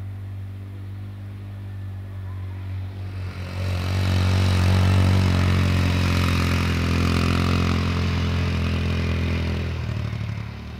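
ATV (quad bike) towing a small two-wheeled trailer driving past: a steady engine hum that grows much louder about three and a half seconds in as it comes close, then eases near the end, with some rattling at the very end.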